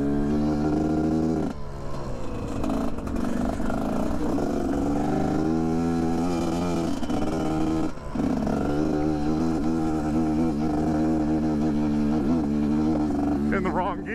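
GPX Moto TSE250R's single-cylinder four-stroke engine running under load on a rocky climb, its exhaust fitted with a FISCH spark arrestor. The pitch rises and falls with the throttle, and the sound drops off briefly about a second and a half in and again about eight seconds in.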